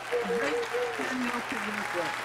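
Applause from several people clapping over a Zoom call, heard through the call's audio, with a voice calling out over it.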